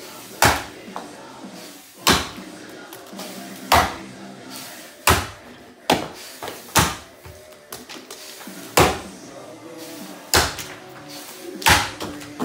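Hardwood axe chopping into an upright tulip poplar block: about eight heavy strikes, one every second and a half or so, with a few lighter knocks between them.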